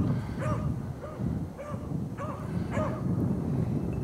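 An old rabbit dog barking in short, repeated yelps, about two a second, as it tracks a rabbit.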